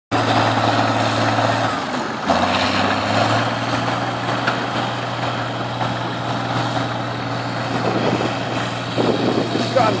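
Heavy machinery engines running steadily under a low hum, with a brief dip in the sound about two seconds in.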